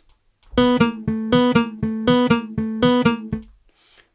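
Acoustic guitar sample played through Logic Pro's Sample Alchemy, its additive, granular and spectral layers arpeggiating: a quick, even run of plucked notes on much the same pitch, about six a second. The run starts about half a second in and stops shortly before the end.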